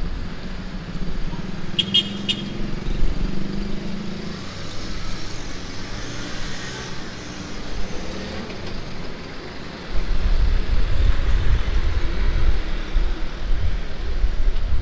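Street traffic at an intersection: a car engine passes in the first few seconds, with a quick run of short high beeps about two seconds in. From about ten seconds a heavy low rumble sets in.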